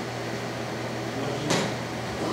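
A steady low hum with a faint haze of noise, and one sharp knock about one and a half seconds in.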